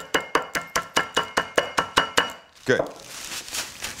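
Tortilla chips in a plastic zip-top bag being pounded on a wooden cutting board and crushed to crumbs, rapid knocks about six or seven a second that stop a little over two seconds in.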